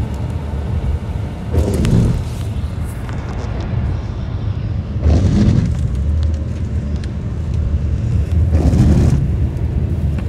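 Car road noise heard from inside the cabin while driving: a steady low rumble, swelling louder three times, about 2, 5 and 9 seconds in.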